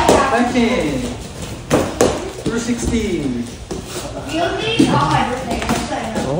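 Sharp slaps of kicks striking a handheld taekwondo kicking paddle: two in quick succession about two seconds in, and one more near the end, with people talking between them.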